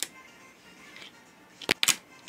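A toy finger skateboard doing an ollie on a windowsill: two or three sharp clicks in quick succession near the end as the board snaps up and lands.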